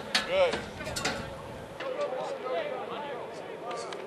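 Mostly voices: a man calls "Good", then other men talk and call out in the background. There are a couple of short, sharp knocks in the first second.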